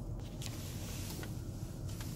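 Low steady hum inside a car's cabin, with a couple of faint light clicks.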